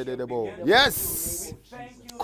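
Men's voices praying aloud, then a long hissing sibilant from a voice about a second in, lasting about half a second.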